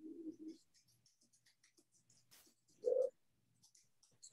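Faint, scattered clicks of a computer being worked. There is one sharper click a little past two seconds and a brief, low voiced sound just before three seconds.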